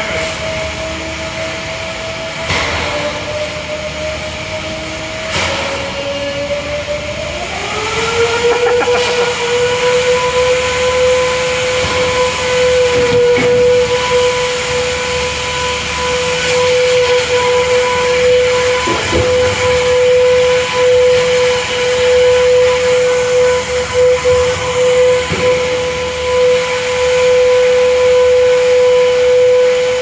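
Combat robot's spinning weapon running at full power with a loud, steady whine. It spins up over about two seconds, a quarter of the way in, to a higher pitch that then holds, with a few sharp knocks along the way.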